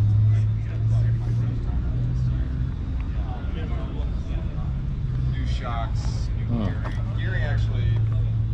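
A steady low engine drone that holds one pitch, with scattered voices of people in the background.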